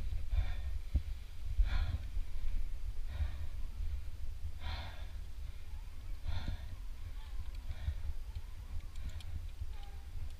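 A climber breathing hard after the climb, heavy exhales about every one and a half seconds, over a steady low rumble.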